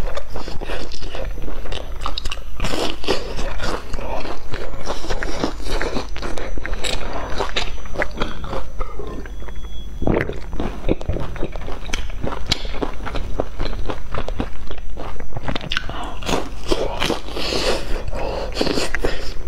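Close-up sound of a person biting into and chewing crisp-crusted fried cakes: repeated crunchy, crackling bites and chewing, with an especially strong crunch about ten seconds in.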